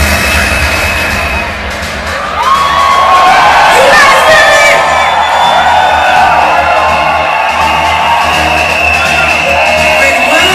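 Loud live concert music over a club PA with a heavy bass, and an audience screaming and cheering. The screams swell about two and a half seconds in.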